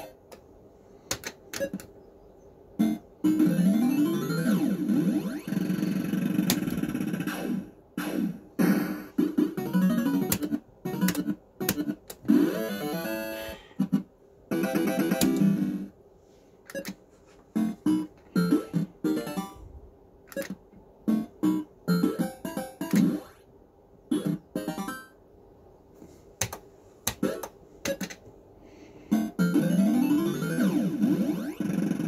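Action Note fruit machine being played, its electronic bleeps and synthesized jingles coming in short bursts with pauses between games. Rising tone sweeps come about three seconds in and again near the end, mixed with many sharp clicks.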